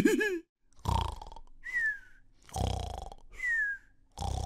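Cartoon-style snoring: two rough, throaty snores, each followed by a short whistle falling in pitch on the breath out. The end of a laugh cuts off just at the start.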